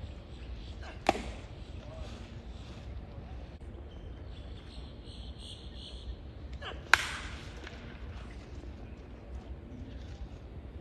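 Two pitched baseballs smacking into the catcher's leather mitt, sharp single pops about six seconds apart, the second the louder.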